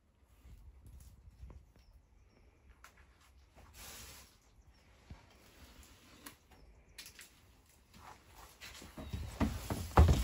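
Faint handling noise: light rustles and small clicks, growing into a few louder knocks near the end.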